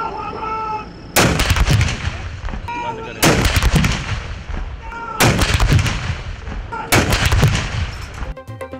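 Towed artillery field guns firing a ceremonial gun salute: four loud shots about two seconds apart, each trailing off in a long fading rumble.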